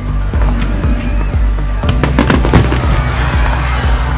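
Fireworks bursting and crackling in a quick string of bangs, thickest about two seconds in, with music playing underneath.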